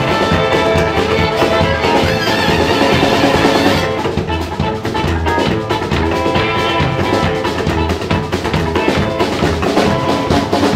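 Live band playing an instrumental passage, with drum kit to the fore over double bass and stringed instruments such as violin, guitar and banjo. The bright, hissy top end drops away about four seconds in while the beat carries on.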